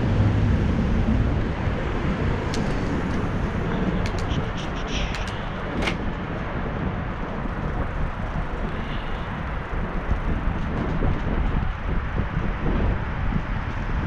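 Steady low rumble of wind on the microphone and city traffic noise while moving along a street, with a few sharp clicks between about two and six seconds in.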